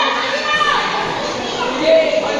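Many children talking and calling out at once, a steady babble of overlapping young voices in a large hall.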